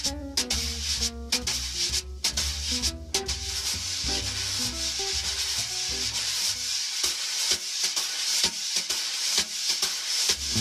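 Wire brushes sweeping on a snare drum head in a swing 2-feel: a steady swishing with light taps, one hand sweeping and tapping in a Z shape, the other sweeping counter-clockwise circles. Quiet backing music with a bass line plays under it and drops away about seven seconds in.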